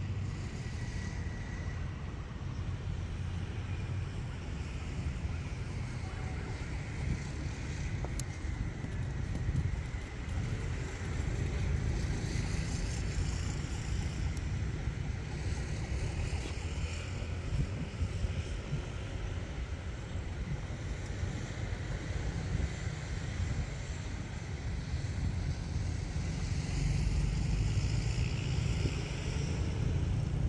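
Diesel locomotive engine running as a locomotive-hauled train rolls slowly toward the microphone: a steady low rumble that grows louder near the end, with some wind on the microphone.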